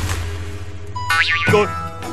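Cartoon sound effects over background music. A falling tree's crash fades out at the start, and about a second in a short rising, springy 'boing' sounds.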